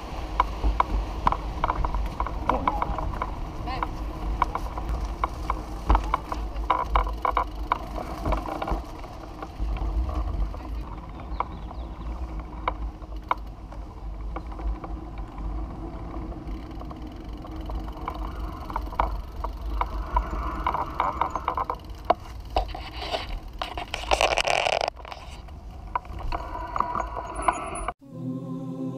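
Recumbent trike rolling over pavement: a constant low wind rumble on the trike-mounted camera's microphone, with the frame and fittings rattling and clicking over bumps. A brief louder rush comes near the end.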